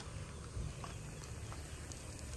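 Quiet outdoor ambience: a steady low rumble with a few faint, short taps at uneven intervals.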